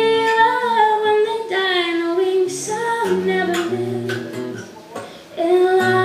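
A woman singing long held notes to her own acoustic guitar accompaniment. Voice and guitar drop away briefly about five seconds in, then the singing resumes.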